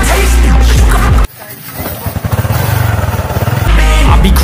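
Background music cuts out about a second in, leaving a small motorcycle engine whose firing beat quickens and grows louder as it revs up, before the music comes back near the end.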